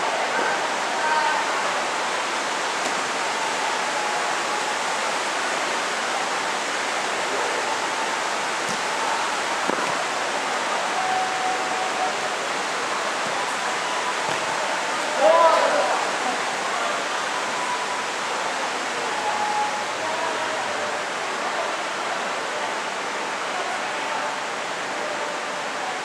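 A steady hiss with players' scattered calls during a football game, and a louder shout a little past halfway.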